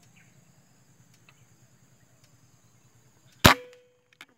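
A single air rifle shot fired at doves perched on a branch: one sharp crack about three and a half seconds in, followed by a brief ringing tone.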